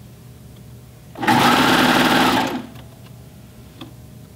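Serger (overlock machine) sewing elastic onto a pant waistband: it runs in one short burst of about a second and a half, starting about a second in and then stopping. A faint click follows near the end.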